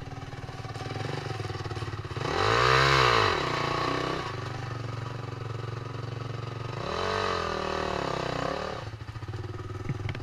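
Dirt bike engine running with two revs as it climbs over rocks. Each rev rises and falls in pitch: the first, about two seconds in, is the loudest, and the second comes around seven seconds in.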